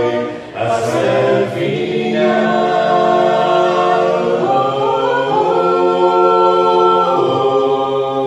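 A small group singing a hymn a cappella in several-part harmony, holding long chords. There is a short break for breath about half a second in, and the harmony moves up to a higher chord around the middle.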